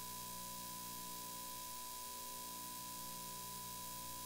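Steady electronic hiss and hum from an idle audio feed, with a thin steady tone held at one pitch and no room sound coming through.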